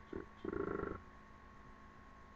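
A man's voice: a short syllable, then a held hum-like vocal sound of about half a second, while reading to himself. After that, low room tone with a faint steady electrical hum.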